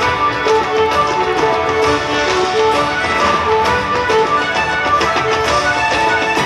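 Folk dance tune played on fiddle and acoustic guitar.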